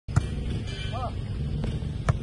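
A volleyball struck twice by hand: two sharp slaps about a second and a half apart, the first the loudest. A player gives a brief call between them, over a steady low rumble.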